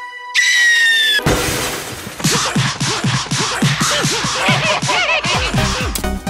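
Cartoon crash sound effects: a loud sustained tone, then a long run of clattering, shattering impacts mixed with quick swooping falls in pitch, several a second.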